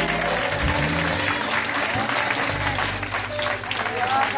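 Church congregation applauding as a sung solo ends, with a few low instrument notes still sounding under the clapping.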